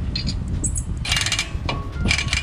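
Cordless impact wrench run briefly at the wheel hub about a second in, a rapid rattle of hammering that lasts about half a second.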